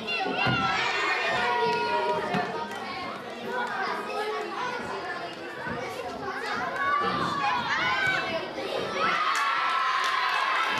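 A group of children shouting and calling out together, many voices overlapping. Near the end the voices swell into cheering as a penalty kick goes into the net.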